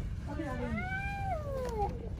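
A long, high-pitched wailing cry that rises and then slides down in pitch over about a second and a half.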